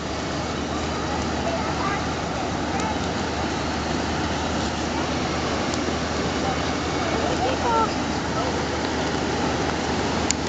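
Steady low rumble of the lake freighter Walter J. McCarthy Jr. passing close, with the even churning rush of its propeller wash over a constant low hum.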